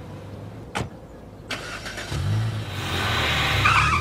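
A car door shuts with a single knock about a second in; moments later the small hatchback's engine starts and the car pulls away, the engine getting louder. A higher-pitched sound joins near the end.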